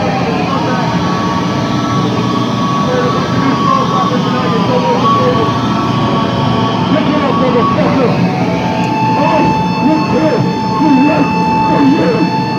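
Electric guitar amplifier feedback: long, steady howling tones that slide down in pitch a couple of times before settling on one held note near the end, over loud amp noise, with people's voices over it.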